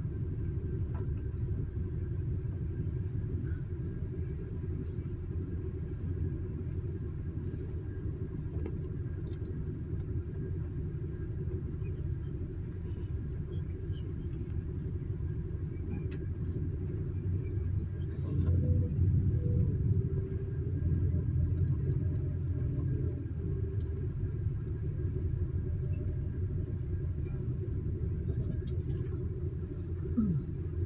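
Steady low rumble of a sightseeing bus's engine and tyres heard from inside the cabin while driving, growing louder for a few seconds a little past the middle.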